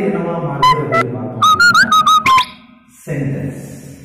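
Chalk squeaking on a blackboard as strokes are written: a run of about eight short, high squeaks, some sliding upward in pitch. A man's voice trails off just before them.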